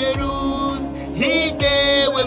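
A woman singing long, wavering notes live over a synth backing with a steady bass and a deep electronic kick drum.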